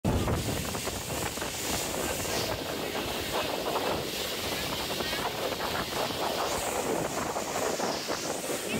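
Gusty wind buffeting the microphone over a steady haze of open-air noise.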